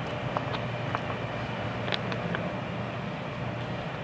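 Steady low outdoor background rumble with a faint hum, and a few faint ticks about half a second, one second and two seconds in.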